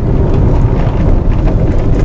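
Loud, steady rumble of road and wind noise from inside a moving car, strongest in the low range, with no distinct events.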